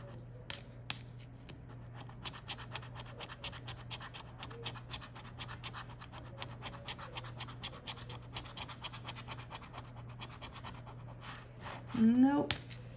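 A coin scratching the coating off a paper scratch-off lottery ticket in rapid short strokes, with two sharper scrapes about half a second and a second in.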